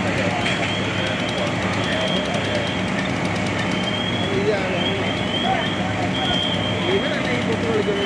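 Fire apparatus engine running steadily with a low hum, under distant voices and short high chirps that repeat on and off.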